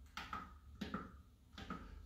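Faint clicks from the control-panel buttons and tabs of an MD-10 Evo electronic organ being pressed one after another, about six in two seconds, as the sound is set before playing.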